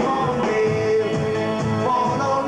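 A male lead singer with a pop-rock band of guitar and drums, performing a mid-1960s pop song. A sung note is held through the middle, and a rising note comes near the end.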